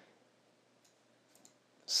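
A few faint, short computer mouse clicks as a scroll bar is dragged and a row in a software grid is selected.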